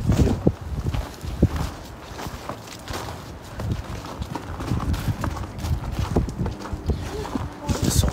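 Footsteps on the snow-covered wooden plank deck of a bridge: a run of dull, hollow footfalls as people walk along it.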